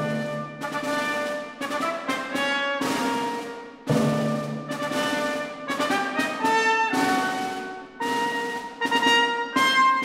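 Orchestra opening a brisk, light classical concerto movement: a string of short, separated notes and chords, each with a sharp attack that quickly dies away, coming in irregular clusters of one to three a second.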